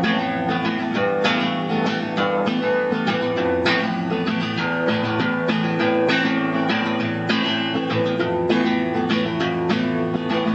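Acoustic guitar strummed in a quick, steady rhythm, the chords ringing on between strokes.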